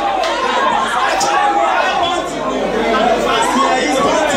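Loud chatter of several voices talking over one another.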